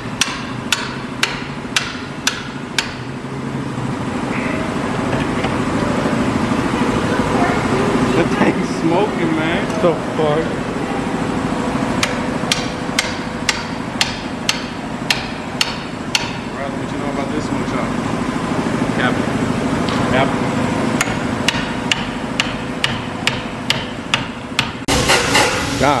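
A hammer strikes a steel bar driven into an Infiniti G35 catalytic converter held in a vise, to break up and knock out the catalyst core. The sharp metal blows come about two a second in runs with pauses between, over a steady background hum. Near the end a louder, noisier air-hose tool starts up in the converter.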